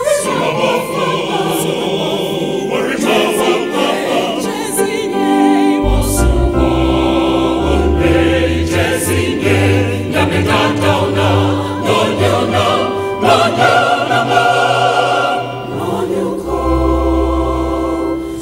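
Music: a group of voices singing, with a deep bass line coming in about six seconds in, dropping out briefly near the end and returning.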